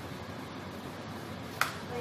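Steady background hiss, then a single sharp click near the end.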